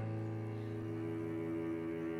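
Background score: low bowed strings holding one sustained chord, steady and unchanging.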